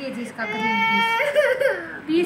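A young child whining and crying: one long high held note starting about half a second in, then a falling wail.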